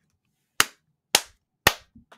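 Three slow hand claps, evenly spaced about half a second apart, each short and sharp with silence between.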